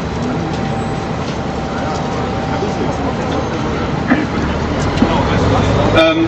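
Steady outdoor street noise: a low rumble of traffic with indistinct voices in the background.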